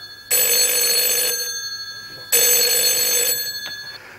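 Desk telephone bell ringing twice, about two seconds apart; each ring starts suddenly, lasts about a second and fades away.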